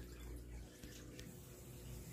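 Faint steady hum and light water sound from running reef-aquarium equipment, with a few faint ticks.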